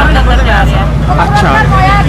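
A woman talking into reporters' microphones, complaining in Urdu/Punjabi, over a loud steady low rumble.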